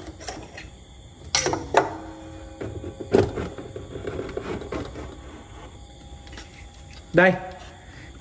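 Knocks and clicks from handling an antique wooden-cased clock as it is opened up to expose its brass movement, the loudest knock about three seconds in. A faint ringing tone lingers after some of the knocks.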